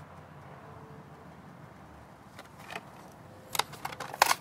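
Faint steady background hum, then a few sharp plastic clicks and crackles from a toy car's clear blister pack being handled, the loudest in the last half second.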